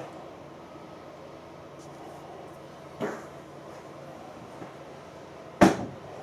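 Quiet workshop room tone with a light knock about halfway through and a sharp, louder click near the end, as steel machined parts are handled on a stationary lathe.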